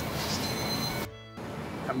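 Steak sizzling over a charcoal grill: a steady hiss. About a second in the sound cuts out for a moment, then quieter background music follows.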